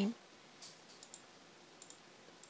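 A few faint, spaced-out computer mouse clicks.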